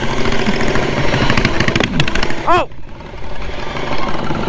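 Modified ride-on lawn mower's engine running steadily under way at riding speed, heard from on board with wind on the microphone.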